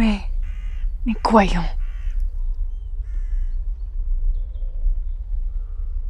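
Crows cawing, three short calls about half a second, two seconds and three seconds in, behind a man's spoken words in the first two seconds. A steady low hum runs underneath.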